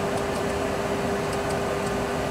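Steady flight-deck noise with a constant hum in a Boeing 737 Classic full flight simulator, and a handful of faint clicks as the speed selector knob on the autopilot mode control panel is turned down, detent by detent, toward 140 knots.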